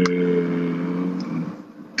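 A man's drawn-out hesitation sound, a held "uhh" at one steady pitch, lasting about a second and a half before it fades.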